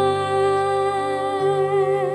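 A woman's solo voice holds one long sung note with vibrato over soft, sustained instrumental accompaniment, whose low notes change about one and a half seconds in.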